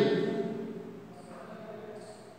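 A man's voice trails off at the start, then a felt-tip marker writes on a whiteboard, a faint light scratching that comes in about a second in.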